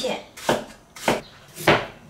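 A Chinese cleaver slicing Chinese leek (scallion) on a wooden cutting board: three sharp knocks of the blade on the board, a little over half a second apart.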